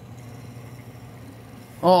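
Faint, steady low background hum and hiss, with no other event. A voice starts speaking near the end.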